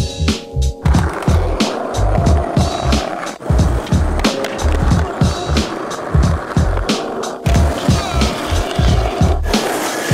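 Skateboard wheels rolling on pavement, starting about a second in, over a music track with a steady bass beat.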